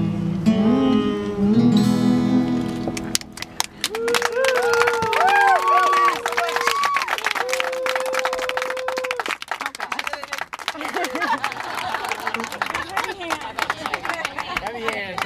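Acoustic guitar's closing chord ringing out under the last hummed notes of the song, then a small audience clapping with whoops and cheers, the clapping running on to the end.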